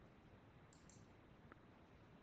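Near silence: faint room tone, with a single faint computer mouse click about one and a half seconds in.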